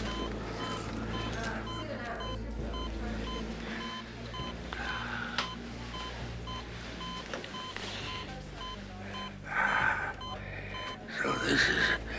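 Hospital patient monitor beeping: short high electronic tones repeating at an even pace, over a low room hum. A voice sounds briefly twice in the last few seconds.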